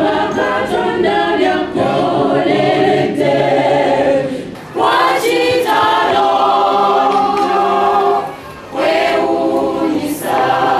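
Church choir singing a hymn, long held notes in several voices, with two short breaks between phrases: one about halfway through and one near the end.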